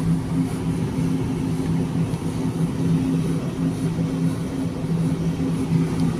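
Steady low mechanical hum of supermarket freezer cabinets, two even low tones over a soft hiss.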